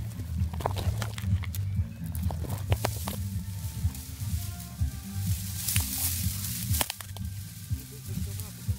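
Music with a low, stepping bass line, over which dry plant stalks crackle and rustle in scattered sharp clicks, with a louder brushing swell about six seconds in.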